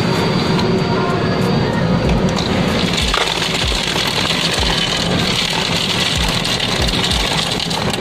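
Soda fountain ice dispenser dropping ice cubes into a foam cup, starting about two and a half seconds in as a steady rattling rush.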